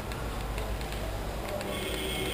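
Low steady hum with a few faint scattered ticks and no speech.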